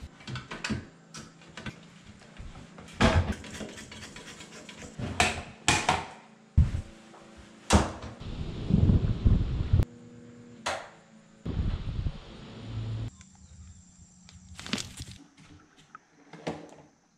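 Irregular knocks, clicks and scrapes of hands and tools working on a ceiling-mounted bathroom exhaust fan with built-in light as its grille and cover are fitted, with a faint steady hum under them.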